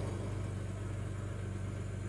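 BMW N52 straight-six engine idling steadily, heard from inside the car's cabin as an even low hum with no change in speed.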